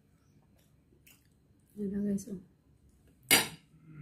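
A single sharp clatter of tableware, a dish or utensil knocked against the table, about three seconds in and much the loudest sound. Before it come a few faint small clicks of hands handling food.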